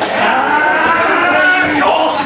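A man's long drawn-out yell from the crowd at ringside, held on one roughly steady note for nearly two seconds.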